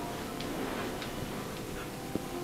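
A brass gua sha scraper sliding over oiled skin in a few short, faint strokes during a deep buttock and thigh massage.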